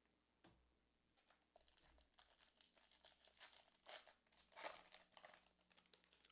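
Faint crinkling and tearing of a foil trading-card pack wrapper being opened, with light rustles and clicks from about two seconds in, loudest around four to five seconds in.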